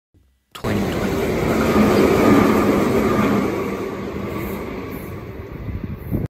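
Electric train running past a station platform, starting abruptly about half a second in, loudest about two seconds in and then fading as it moves away.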